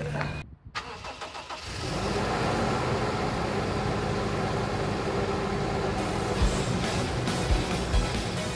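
A vehicle engine starts about two seconds in and then runs steadily at idle, with a few light knocks near the end.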